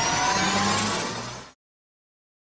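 Tail of an electronic logo sting: several tones glide slowly upward over a low rumble as the sound fades, then it cuts off suddenly about one and a half seconds in.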